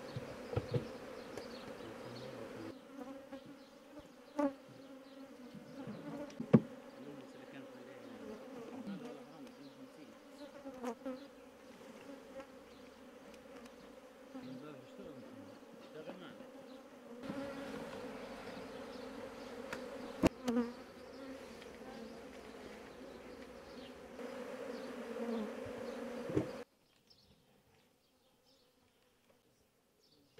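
A mass of honeybees buzzing around open hives: a steady hum, broken by a few sharp knocks. The buzzing stops abruptly near the end.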